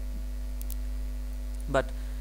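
Steady low electrical hum with faint higher steady tones, heard through a pause in the talking; one short spoken word near the end.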